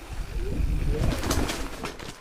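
Rocky Mountain 790 MSL mountain bike rolling down a dirt singletrack: tyre and trail rumble with the frame and chain rattling, and a run of sharp clacks over roots in the second half. A brief, low wavering tone sounds in the first second.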